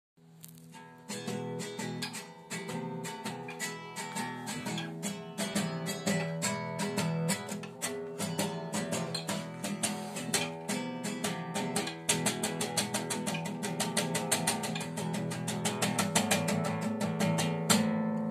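Classical nylon-string guitar sounded with a bow drawn across its strings, giving held low notes under a fast, steady run of short, sharply struck notes.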